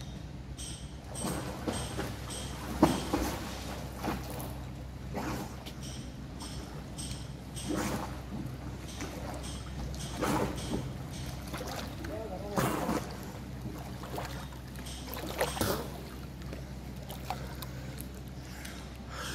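Swimmer's strokes splashing and churning the water of a pool, a splash every second or two, over a steady low hum.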